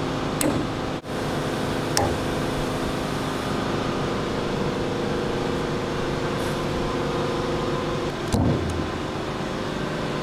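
A steady mechanical hum with a faint pitched drone running underneath, broken by a few light clicks in the first two seconds and a short low thump about eight seconds in.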